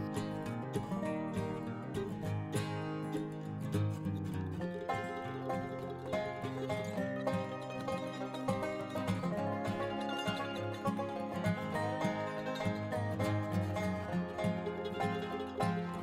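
Soft background instrumental music with plucked strings.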